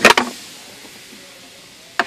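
A sharp plastic click and clunk as the centre-console armrest lid is unlatched and opened, followed by quiet cabin hiss.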